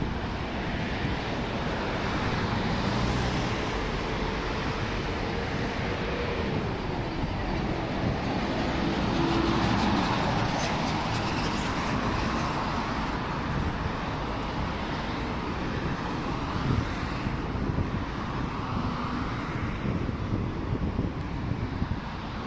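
Steady city road traffic noise from passing cars, swelling as vehicles go by about three seconds in and again around ten seconds. A few short light knocks near the end.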